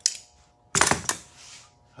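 Thin sheet-metal air box panel clattering as it is handled and turned over, with one sharp metallic clank about three-quarters of a second in and a faint ring after it.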